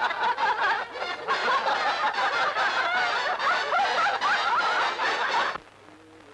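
A group of young men and a woman laughing loudly together at someone, many mocking laughs overlapping, cut off abruptly shortly before the end.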